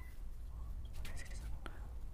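Marker pen writing numbers on a whiteboard: short scratchy strokes, most of them about a second in, over a steady low hum.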